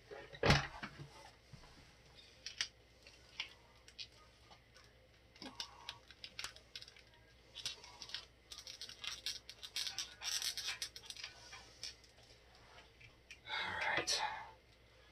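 Small plastic clicks and rattles from hands working an action figure's head onto its neck peg, the loose head not seating fully. A single louder knock comes about half a second in, and the clicking grows busier past the middle.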